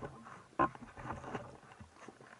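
Underwater knocks and clicks from handling a wooden speargun, picked up through the gun-mounted camera housing. A sharp knock comes about half a second in, followed by several softer clicks.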